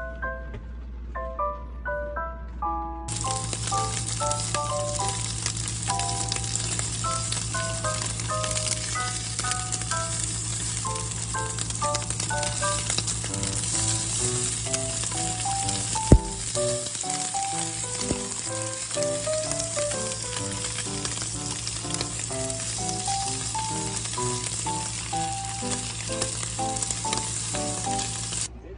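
Slices of beef sizzling in a frying pan, turned with chopsticks, a steady crackling hiss that starts about three seconds in, over background music. A single sharp click sounds about halfway through.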